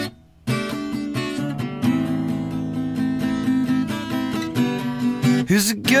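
Acoustic guitar strummed in chords as a song's intro, with a brief stop of about half a second just after the start. A singing voice comes in at the very end.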